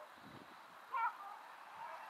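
A single short gull call about a second in, over faint outdoor background noise.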